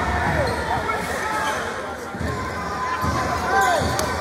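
A basketball bouncing on a gym's hardwood floor: dull thumps about a second apart in the second half, under voices and shouts from the crowd and benches.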